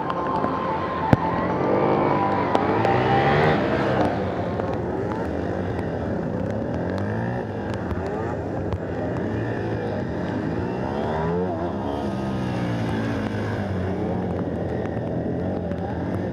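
Aprilia SXV 450 supermoto's V-twin engine revving up and down again and again under hard acceleration and braking through tight turns, its pitch climbing and dropping every second or two, loudest in a long rise early on.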